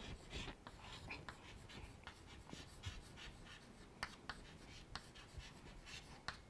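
Chalk writing on a chalkboard: faint, quick taps and scratches as a word is written in strokes.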